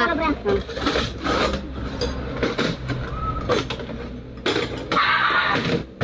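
People talking amid the clink and scrape of steel hand tools being moved on a metal workbench, over a steady low hum.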